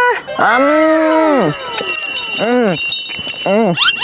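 Wordless voice calls, each rising and then falling in pitch: a long one over the first second and a half, then shorter ones about two and a half and three and a half seconds in, ending with quick upward glides.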